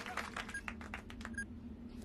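Control-room computer sounds: quick irregular clicks like keyboard typing, a short high electronic beep twice, over a low steady hum.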